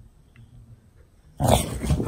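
English bulldog giving a loud, rough vocal burst about one and a half seconds in, after a quiet start.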